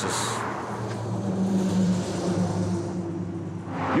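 Road traffic: a motor vehicle's engine hum swells through the middle and fades near the end, over steady outdoor traffic noise.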